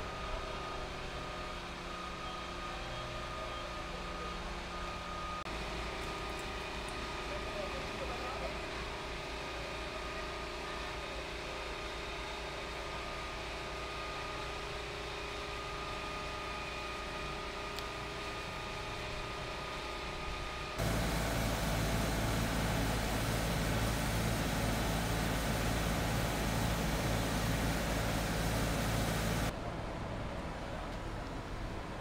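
Street ambience at a fire scene: a steady hum of idling heavy vehicle engines with faint voices. About two-thirds of the way through it cuts to a louder, even rumbling noise for several seconds.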